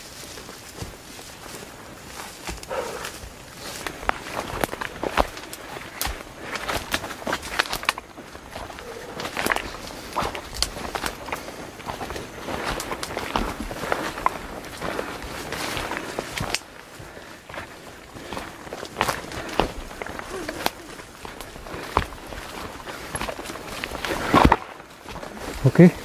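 Footsteps on a narrow dirt trail mixed with the brushing and crackling of leaves and stems pushed through by the walkers, an irregular run of light steps and snaps.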